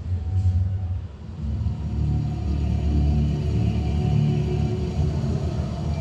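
A deep, steady rumble with several held low droning tones over it, dipping about a second in and then swelling back. This is the ride's soundtrack underscoring the scene change.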